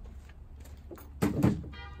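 A folded stroller set down in a lined pickup truck bed: a single thud a little over a second in, followed by a brief squeak.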